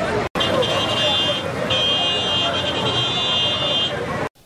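Busy street sound with many voices and traffic. A high, steady electronic tone sounds twice, the first time for about a second and the second for about two seconds. The sound drops out briefly near the start.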